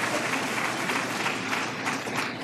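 Audience applauding, a steady clapping of many hands.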